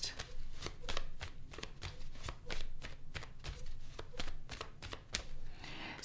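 A deck of tarot cards being shuffled by hand: a run of quick, irregular card clicks and flicks, a few per second.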